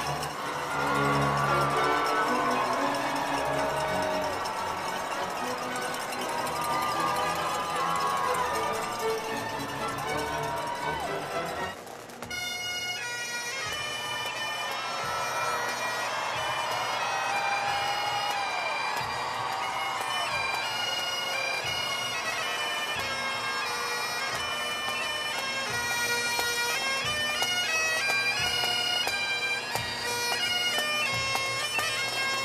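Bagpipes playing a processional tune, the chanter melody over a steady drone. The music dips briefly about twelve seconds in, then the pipes play on.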